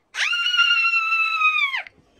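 A single high-pitched scream held at a steady pitch for about a second and a half, sliding up sharply at the start and dropping off at the end.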